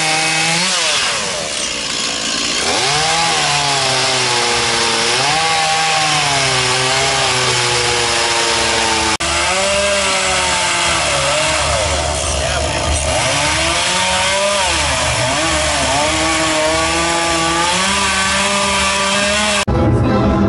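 Gas chainsaw cutting into a block of wood, its engine speed rising and sagging again and again as the chain bites and is eased off, with a momentary drop-out about nine seconds in. Music and voices come in just before the end.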